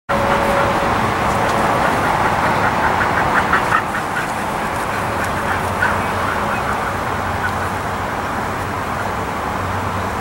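Steady outdoor background noise with a quick run of bird calls, about ten a second, three to four seconds in, and a few more near six seconds.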